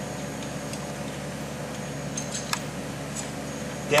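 Steady workshop background hum with a few faint light clicks from the tool slide of a split-frame pipe beveling machine, its feed knob turned by hand to lower the cutting bit; the machine's air motor is not yet fitted, so the machine itself is not running.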